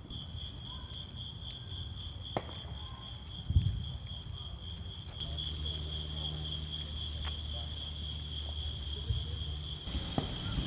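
Night insects keep up a steady high-pitched chorus, over low rumble and one dull thump about three and a half seconds in.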